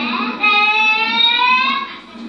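A child's voice holding one long high-pitched cry that rises slightly in pitch, starting about half a second in and breaking off just before the end.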